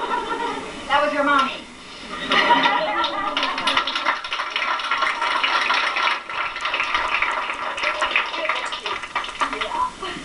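Small audience clapping and cheering, with voices calling out over the applause.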